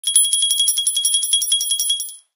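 Sleigh bells shaken in a fast, even rhythm, about twelve jingles a second, as a Christmas intro sound effect.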